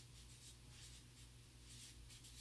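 Faint scratching of a marker writing on a paper chart pad.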